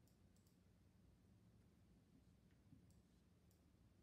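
Near silence with a faint low hum, broken by a few faint, short clicks of a marker pen touching and lifting off a whiteboard as numbers and a box are written.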